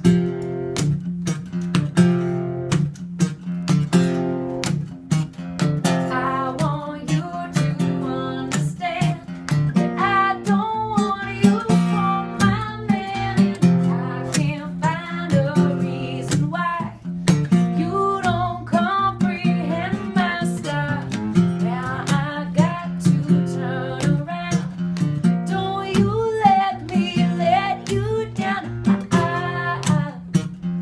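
A woman singing a song live to a strummed guitar accompaniment. The guitar plays alone for the first few seconds, and then the voice comes in over it.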